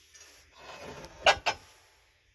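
A ceramic jug scraping across a shelf as it is handled, then two sharp knocks close together as it is set down.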